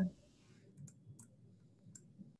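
A few faint, sharp clicks of a computer mouse, spaced irregularly over low room tone.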